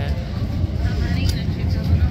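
Steady low rumble of city background noise, with faint voices about a second in.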